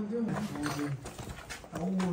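Low voices: short murmured exclamations with whispering between them.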